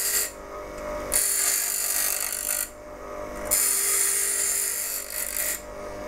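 Bench grinder running steadily while a steel skew chisel is held to its coarse grinding wheel with light pressure. The blade is pressed on three times, each contact a high grinding hiss of a second or two with short pauses between, as the chisel's lower corner is rounded off.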